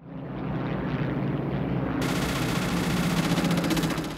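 Film sound of a formation of P-51 Mustang piston-engine fighters: a steady engine drone that fades up. About halfway through, a rapid, even rattle of machine-gun fire joins it.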